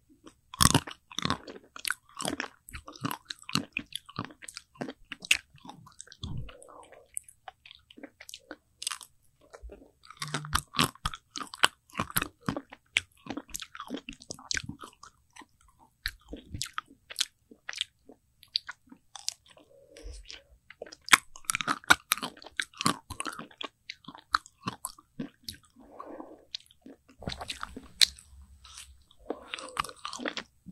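Close-miked crunching and chewing of an Okdongja ice cream bar's hard milk-and-chocolate coating: bursts of sharp crisp crunches, with quieter chewing between.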